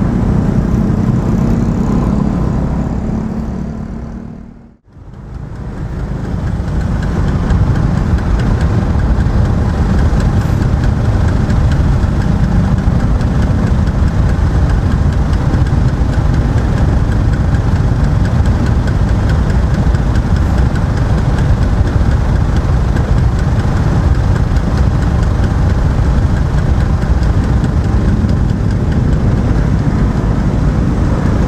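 Steady engine and traffic noise picked up by a helmet-mounted camera on a motor scooter, riding at first. About five seconds in, the sound fades away to silence and fades back in, and then holds as a steady din of engines idling in stopped traffic.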